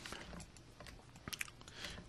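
A few faint, quick clicks about one and a half seconds in, over quiet room hiss.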